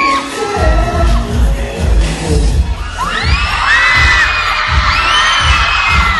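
Loud live pop dance track over a concert sound system, its bass beat thumping about twice a second, with a crowd of fans screaming in high, drawn-out cries that swell from about halfway through.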